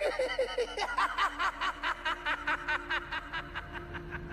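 The animated Joker's manic cackling laugh: a man's voice in a fast, even run of 'ha' pulses, about six a second, that fades out near the end.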